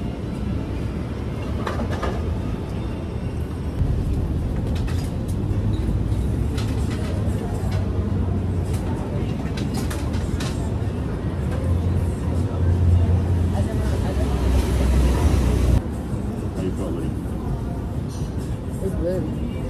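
Outdoor street ambience: a steady low rumble like passing traffic that swells through the middle and cuts off suddenly near the end, with occasional light clicks and indistinct background voices.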